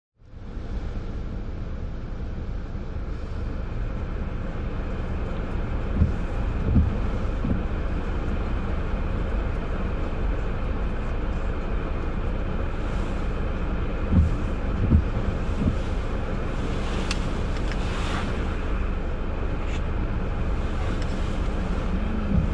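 Steady low rumble of city traffic around a car stopped in traffic, with a few short dull thumps.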